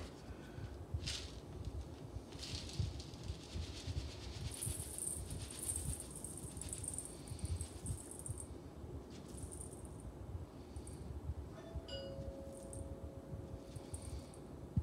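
Dry quick oats poured from their canister into a stainless steel bowl on a kitchen scale: a light rustling hiss that comes and goes, over a low steady rumble. A faint steady tone starts near the end.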